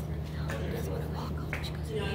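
Faint, indistinct speech in a hall, over a steady low electrical hum.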